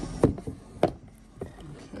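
Cardboard box being opened and handled, with three sharp knocks about half a second apart.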